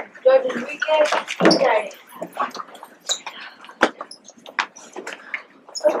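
A group of children getting up from the floor: voices in the first two seconds, then shuffling, rustling and scattered knocks of feet and furniture, with one sharp knock about four seconds in.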